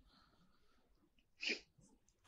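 Near silence, broken once about one and a half seconds in by a single short, breathy sound from a person.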